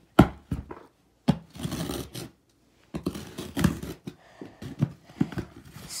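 Cardboard shipping box being handled: a string of sharp knocks and taps on the cardboard, the loudest right at the start, with scraping and rustling of the cardboard between them.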